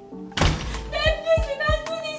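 A door slammed shut once, about half a second in, followed by background music with a steady beat.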